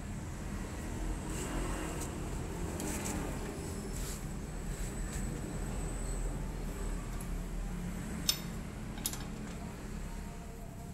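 Steady low background hum, with light clicks and a sharp click about eight seconds in as a hand handles the jacked-up front wheel.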